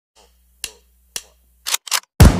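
Percussive sound effects at the start of an electronic music track: two sharp clicks about half a second apart over a faint low hum, then two louder, longer noisy bursts near the end.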